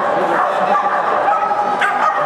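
Dog barking and yipping, with people talking in the background.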